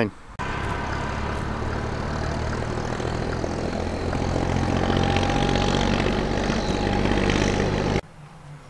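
A vehicle engine running steadily: a low, even drone with road noise that starts suddenly about half a second in and grows a little louder in the second half.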